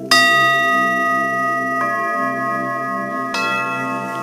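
Three struck bell-like chime tones, about a second and a half apart, each ringing on and overlapping the last, the first the loudest, over a soft, steady music pad.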